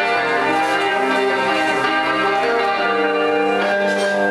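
Fender Telecaster electric guitar playing a slow instrumental in E minor, with overlapping notes left to ring into each other.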